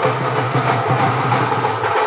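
Loud music with drums and percussion playing steadily.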